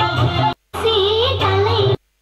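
Song with a singing voice over a steady low bass, accompanying a stage dance. It cuts out abruptly to total silence for a moment about half a second in, and again at the end.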